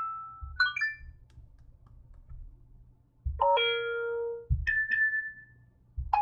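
An iPhone 5 speaker playing iOS 7 text-tone previews one after another: a short run of quick rising beeps about half a second in, a bright several-note chime at about three seconds that rings out for more than a second, then a single high ding near five seconds.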